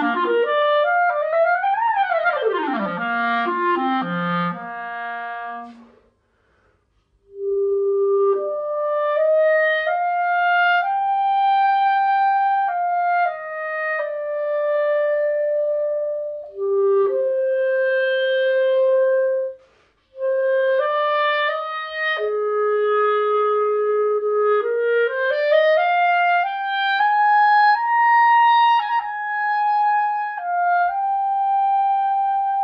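Clarinet played solo through a Vandoren Masters CL5 mouthpiece with a harder reed. It opens with a fast run up and down, pauses briefly, then plays a slow line of held notes that climbs near the end.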